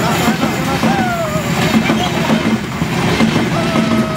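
Passenger train coaches passing close by: a loud, steady rumble of wheels on the rails with a regular clatter, and a man's voice over it.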